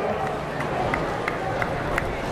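Outdoor crowd ambience: a steady wash of indistinct voices and background noise, with faint short high chirps repeating about three times a second.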